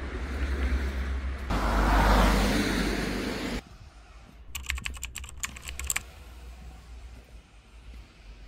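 Outdoor noise with a heavy low rumble, loudest in the middle, that cuts off suddenly. Then, in quieter surroundings, comes a quick run of sharp clicks for about a second and a half, like keyboard typing.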